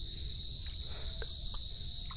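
Insects, crickets by their sound, chirring in a steady high-pitched evening chorus, with a low even rumble beneath.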